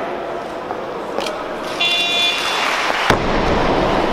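A loaded barbell with bumper plates dropped onto the competition platform after a completed snatch, one heavy thud about three seconds in. Before it a short buzzer tone sounds, the referees' down signal, and noise from the hall rises.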